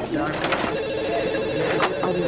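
A telephone ringing with a steady electronic trill, starting less than a second in.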